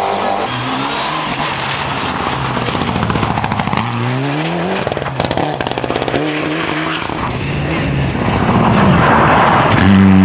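Mitsubishi Lancer Evolution rally car engine revving hard, its pitch climbing through each gear and dropping at the shifts. Near the end comes a loud rush of tyre and slush noise as the car passes close.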